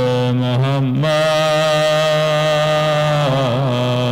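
A man chanting a melodic recitation into a microphone, singing a short phrase and then holding one long note that wavers near the end, with a steady low hum beneath.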